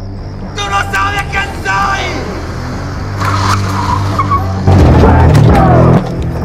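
A van pulls up with its engine running and its tyres skidding and squealing, loudest in the last second or so. Voices sound in the first couple of seconds.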